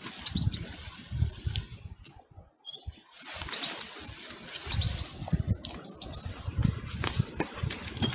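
Rustling of leaves and stems and scuffing footsteps as someone pushes through a dense patch of stinging nettles and undergrowth, with irregular low thumps. The sound drops away briefly a little over two seconds in.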